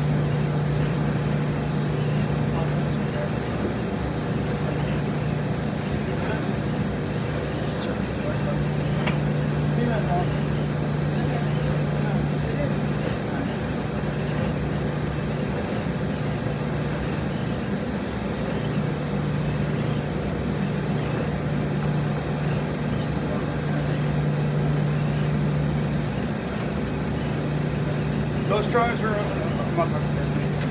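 Steady machine hum of laundromat washers and dryers running, with a low drone that briefly drops out several times.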